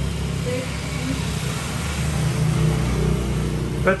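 Motor vehicle engine running, a steady low rumble with no sharp events.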